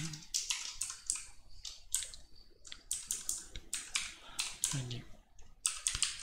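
Typing on a computer keyboard: an uneven run of keystroke clicks, several a second.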